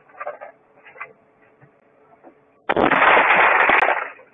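A sudden loud crash about two-thirds of the way in, lasting just over a second and cut off abruptly: a taxi's side window being smashed in, heard from inside the cab. Before it, a few faint knocks.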